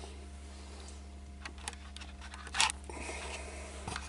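Light handling of a wooden block clamped in a vice: a few faint ticks and a short scuff about two and a half seconds in, over a steady low hum.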